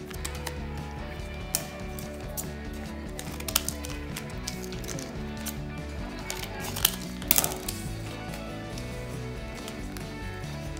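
Background music, with the crinkle and crackle of a clear plastic packet of nail strips being handled. A few sharp crackles stand out, the loudest about three and a half and seven seconds in.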